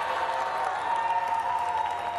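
Audience applauding and cheering.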